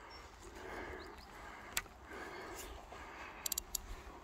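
Faint handling noise from a fishing rod and fixed-spool reel while a fish is being played, with a sharp click about two seconds in and a quick run of light clicks near the end.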